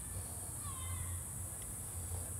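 Quiet background: a steady low hum and a steady high hiss, with a few faint, thin chirps in the first second.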